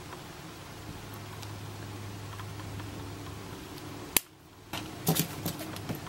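Quiet handling of plastic pens by hand over a low room hum. There is a sharp click about four seconds in, then a few soft clicks and rustles.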